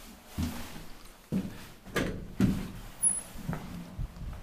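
Elevator doors opening at the ground floor and someone stepping out: a run of about six clunks and knocks spread over a few seconds.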